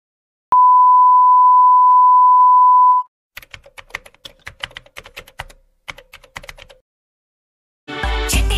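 A steady electronic beep lasting about two and a half seconds, then the clicking of a computer-keyboard typing sound effect in two runs, a short pause between them, as on-screen text types out.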